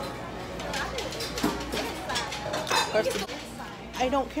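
Restaurant dining-room noise: people chattering over background music, with a few clinks of dishes and cutlery.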